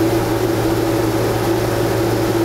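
Combine harvester running steadily at a constant hum while grain hisses as it pours from the unloading auger into a truck body, unloading a full grain hopper.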